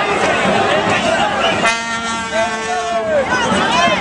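A vehicle horn sounds one steady note for about a second and a half near the middle, over crowd chatter and shouting in the street.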